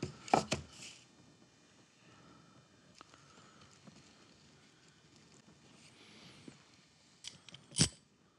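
Metal bar clamps being handled and tightened on a glued wooden box: a few sharp clicks and knocks near the start and two near the end, with faint handling noise between.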